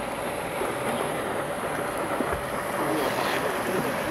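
Outdoor noise of wind on the microphone, with faint distant voices and a faint steady hum.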